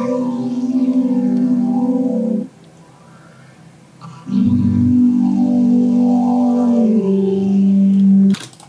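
Vocoder output from the Vocodex plugin: a sung vocal line turned into robotic, synth-like chords. Two long held chords sound with a pause of about two seconds between them, and the second steps down in pitch near the end.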